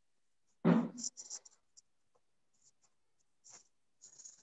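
A brief murmur of a person's voice about three-quarters of a second in, then faint, scattered scratchy ticks over near silence.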